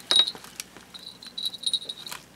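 A small cellophane packet of tiny trinkets handled in the fingers: the plastic crinkles and the contents give light, high clinks, with one sharp click just after the start and a run of clinks about a second in.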